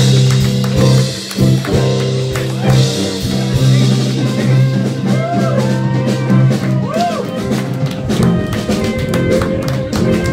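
Live blues band playing: electric guitars, bass guitar and drum kit, with two bent notes rising and falling about five and seven seconds in.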